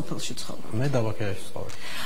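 A person speaking briefly in a conversation, with a rubbing noise alongside.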